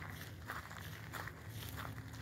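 Faint footsteps on a gravel path scattered with fallen leaves, about two steps a second.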